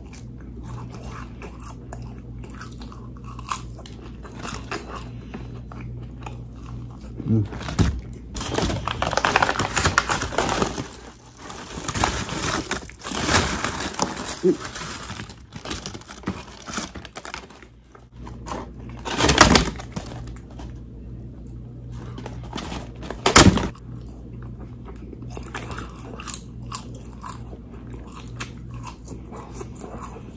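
Close-miked eating of Popeyes fried food, with chewing and crunching. Paper fry bags rustle as they are handled and the fries are shaken out, giving several louder noisy stretches, one of them short and sharp. A steady low hum runs under it all.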